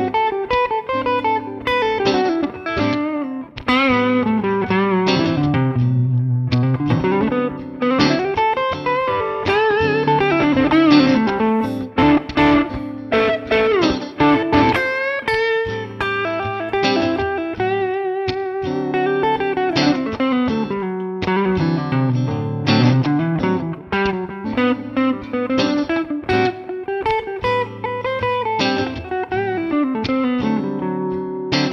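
Electric guitar playing A minor pentatonic lines with the added F sharp and B of the Dorian mode, running up and down the neck in repeated phrases. A held minor seventh chord sounds underneath, and some notes near the middle are held with vibrato.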